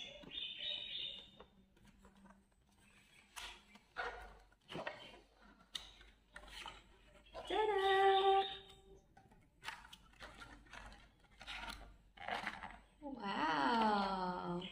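A cardboard box being opened and its packed contents handled, heard as scattered short clicks and scrapes. A long held vocal sound comes about eight seconds in, and a voice exclaims near the end.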